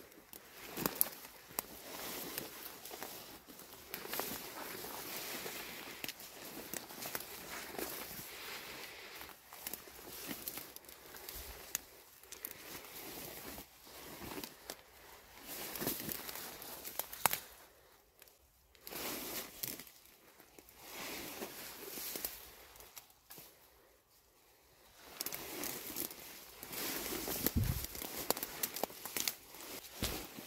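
Tall dry weeds and brush rustling and crackling against clothing and the camera as people push through on foot, with footsteps. The rustling drops away briefly twice in the middle, when the walking pauses.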